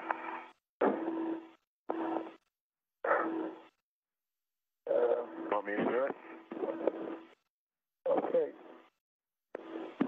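Space-to-ground radio loop: several short keyed transmissions of thin, indistinct voice, each cutting off abruptly into dead silence, with a steady low hum running under each transmission.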